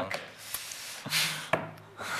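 A man's breathy exhales close to the microphone, a click, then a short steady hum as he thinks.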